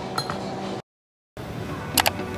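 A short metallic clink of cutlery against tableware, ringing briefly, a moment in. The sound cuts out completely just after halfway, and a sharp crack comes at the very end.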